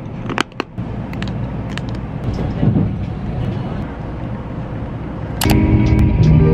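Steady rumbling cabin noise inside a Shinkansen bullet train, with a couple of sharp knocks from the camera being handled about half a second in. Background music with sustained notes comes in near the end.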